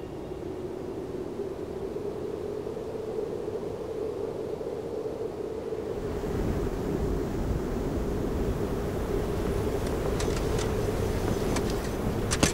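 A steady mechanical hum over a rushing noise, a little louder from about halfway through, with a few faint clicks near the end.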